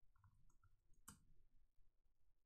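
Faint computer keyboard typing: a few soft keystrokes, then one sharper key press about a second in.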